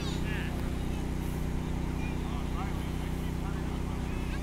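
Spectators calling out to BMX riders during a race, a few short high shouts, over a steady low hum.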